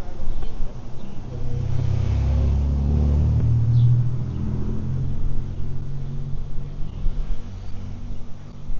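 A motor vehicle driving past on the street. Its engine rumble swells from about two seconds in, peaks, and fades away by about six seconds.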